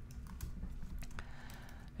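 Computer keyboard typing: a run of faint, irregularly spaced key clicks as a word is typed in capitals.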